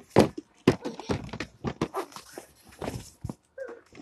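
A young child whimpering and fussing, over sharp clicks and knocks of plastic toys being handled close to the microphone.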